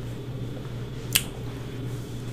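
A single short, sharp click about a second in, over a steady low hum in a small room.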